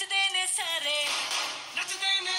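A Hindi-language film-style song playing: a singer's voice gliding over backing music.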